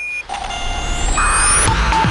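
Electronic title music of a TV programme's opening sequence: a short high beep at the start, then held synthesized tones over a low bass, with a rising sweep about a second in.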